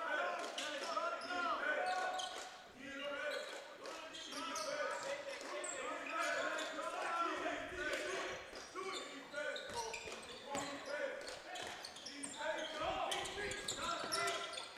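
Basketball being dribbled on a hardwood gym floor, scattered thumps, with players' voices calling out and echoing through the gymnasium.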